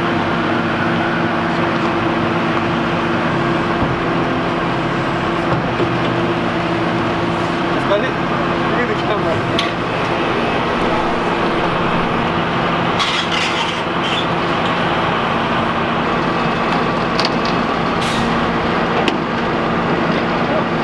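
An engine running steadily at idle while a school bus is pulled by chain up a steel lowboy trailer ramp, with a few sharp metallic clanks in the second half.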